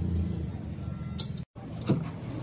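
A steady low mechanical hum with a sharp click about a second in. The sound cuts out for an instant just after halfway, then returns with another sharp knock near the end.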